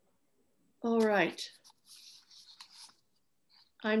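A person's voice: one short vocal sound falling in pitch about a second in, followed by soft rustling, and then a woman starting to speak just before the end.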